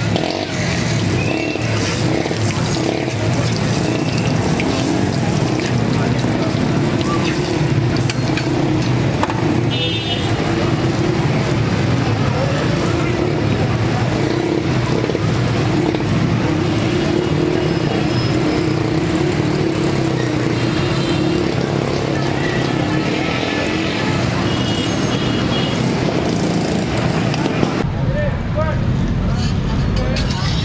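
Steady, busy street noise of traffic and people's voices.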